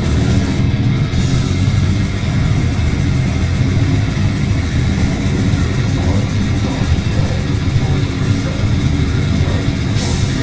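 Grindcore band playing live at full volume, bass guitar, electric guitars and drums merging into a dense, steady wall of sound heaviest in the low end, with no break.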